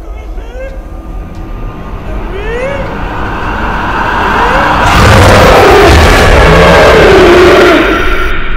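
Horror-film sound effects: a low rumble with a few rising swoops that swells into a loud, noisy rush with a wavering tone from about five seconds in, cutting off abruptly near the end.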